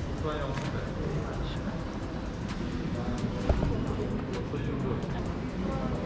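Faint, indistinct voices over the steady background hum of a busy indoor hall, with one short knock about three and a half seconds in.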